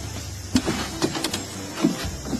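Several short knocks and bumps on a canoe hull, about five spread over a second and a half, with a faint creak on some of them, as people shift about in the boat.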